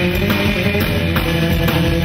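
A live surf rock band playing an instrumental: electric guitar over bass and drums, with a steady beat about twice a second.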